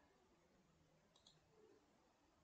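Near silence: room tone, with a faint double click of a computer mouse button about a second in.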